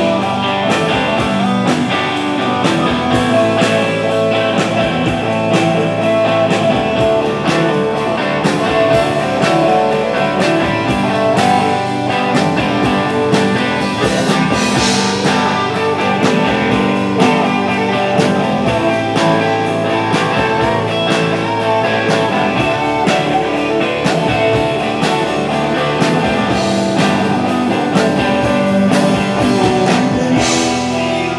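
Live rock band playing an instrumental passage: distorted electric guitars through Marshall amplifiers over a steady drum beat, with no singing.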